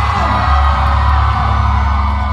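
Rock band playing live and loud: a steady, held wash of electric guitar over a heavy bass low end, with no vocals at this moment.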